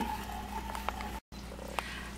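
Low background hum and hiss, broken by a brief dropout just over a second in, with a couple of faint clicks.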